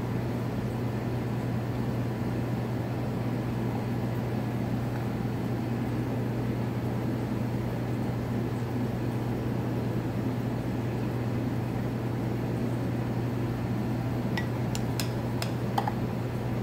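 Steady low mechanical hum, as from a pump or fan motor, with an even hiss above it. A few light clicks come near the end.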